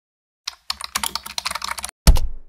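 Computer keyboard typing: one keystroke, then a quick run of key clicks for about a second that stops just before the end, as a password is typed in.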